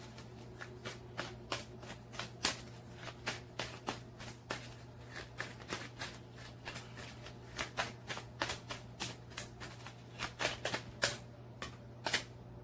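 A deck of tarot cards being shuffled by hand: quick, irregular card snaps all through, over a faint steady low hum.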